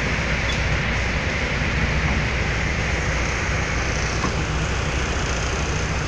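Steady noise inside a vehicle driving through heavy rain on a flooded road: a low engine and road rumble under the hiss of rain and water.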